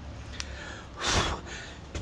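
A single breathy rush of air, like a person's exhale or sigh, about a second in, over a low steady rumble.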